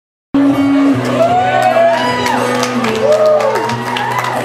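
Live instrumental intro on cello, keyboard and acoustic guitar, with steady low notes held underneath. Audience members whoop and shout over it, rising and falling calls, two or three times. The sound cuts in abruptly just after the start.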